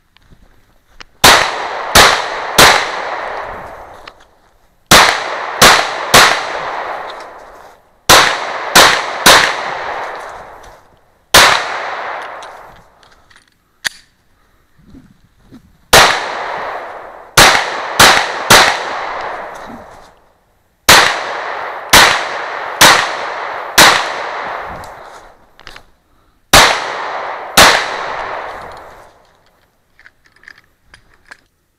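Glock 26 subcompact 9mm pistol firing in quick strings of two to four shots, with a few single shots between them. Each string echoes and fades over a couple of seconds before the next begins.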